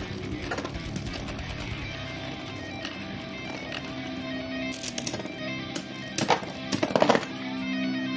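Background music with electric guitar, over which several sharp clacks come in the second half as the spinning Beyblade tops collide in the plastic stadium, the last of them knocking one top out for an over finish.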